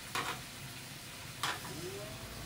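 Meat sizzling on a tabletop barbecue grill, with two sharp clicks of metal tongs against the grill about a second apart.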